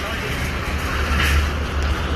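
Outdoor street ambience: road traffic rumbling steadily, with people talking in the background.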